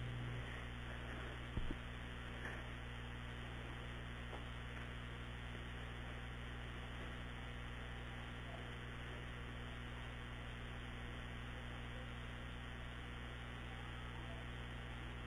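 Dead air on a call-in radio broadcast: a faint, steady electrical mains hum with light hiss. A single faint click comes about a second and a half in.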